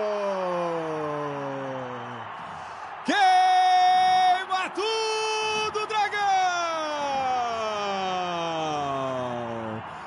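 A Brazilian TV football commentator's drawn-out goal cry: four long held shouts, the first and last sliding slowly down in pitch and two shorter level ones between them.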